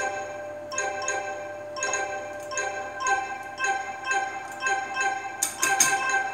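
Electronic mallet-like chime notes from a Jersey Jack Hobbit pinball machine's speakers, repeating about twice a second, with a few sharp clicks near the end.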